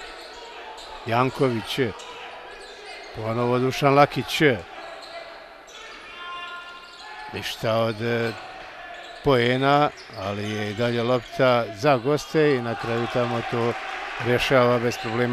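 A basketball dribbled on a hardwood court during live play, with a man's voice calling out several times, most often in the second half.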